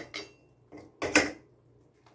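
Metal ladle knocking and scraping against a stockpot and a steel canning funnel as hot stew is ladled into a glass jar: a few short clinks with quiet between, the loudest just after a second in.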